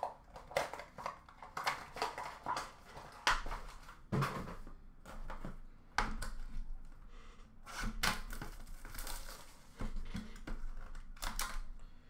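Hockey cards and their pack packaging handled by hand: an irregular string of short clicks and rustles as cards are shuffled and packs are opened.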